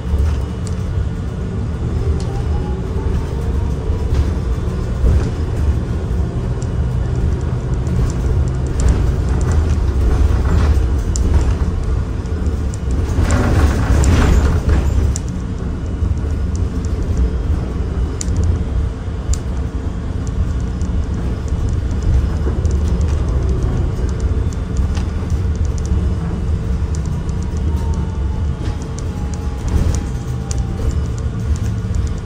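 City bus driving, heard from inside the passenger cabin: a steady low engine and road rumble with a faint whine that rises in pitch early on and falls near the end. A louder rushing noise swells and fades around the middle.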